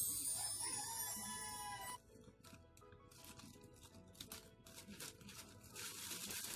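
Edited-in comedic sound effect: high, rising whistle-like glides that cut off abruptly about two seconds in, over background music. Then soft crinkling of the plastic packaging as it is handled.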